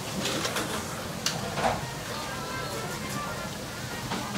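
Restaurant room sound: faint background music and distant voices, with a single sharp click a little past a second in.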